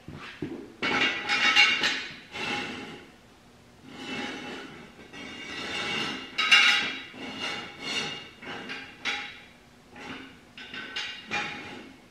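Steel jack stands clanking and rattling as they are set down and adjusted: several clusters of metal knocks with a ringing after them, separated by quiet gaps.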